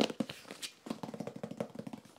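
Fingertips tapping and scratching on a cardboard shipping box, a quick, uneven run of light taps.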